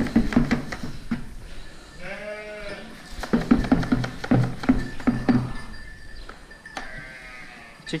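Merino sheep bleating: one long bleat about two seconds in and a shorter, fainter one near the end. Between them comes the clatter of feed being tipped from a plastic bucket into a metal feeder.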